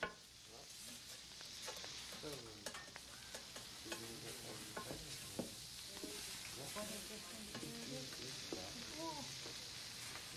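Food sizzling on a flat-top griddle, a steady hiss, with frequent scraping clicks of a spatula working the food.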